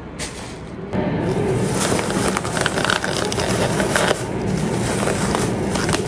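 Thin plastic carrier bag rustling and crinkling as hands untie and pull it open around a takeaway food container, starting about a second in and running on steadily.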